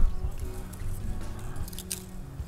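Background music, with a few short snaps near the end as small twigs are broken off a dry manzanita branch by hand.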